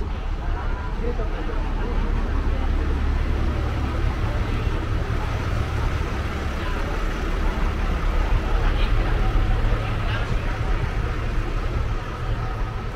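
Busy street ambience: a steady low rumble of traffic and vehicle engines, with voices of passers-by talking.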